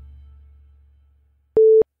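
The last low note of rock music fades away to silence. About a second and a half in, a single short electronic beep sounds: one steady mid-pitched tone, loud and about a quarter second long.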